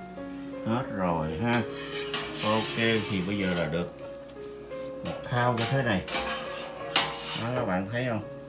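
A metal wire strainer clinking and scraping against a stainless stockpot several times as simmered vegetables are lifted out of the broth, with one sharp clank about seven seconds in the loudest. Background music with a singing voice plays throughout.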